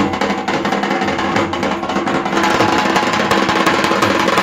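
Procession drummers beating hand-held drums with sticks in a fast, dense rhythm, with a steady held melody underneath.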